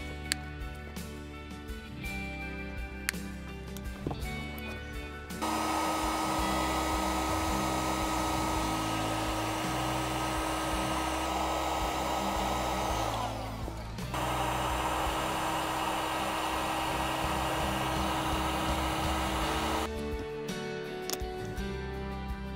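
Electric heat gun running: a steady rush of fan and hot air with a constant whine, shrinking red heat-shrink tubing over a crimped eyelet terminal on the battery cable. It starts about five seconds in, cuts out for about a second partway through, then runs again until near the end, over background music.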